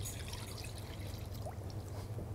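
Milk and cream poured from a plastic jug into a stainless steel saucepan, a faint liquid pour over a steady low hum.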